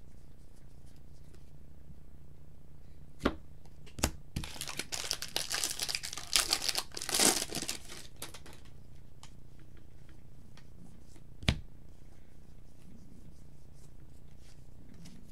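A 2019 Topps Update baseball-card pack being torn open, its wrapper crinkling for about four seconds. Two sharp knocks come just before the tearing and a single knock follows later.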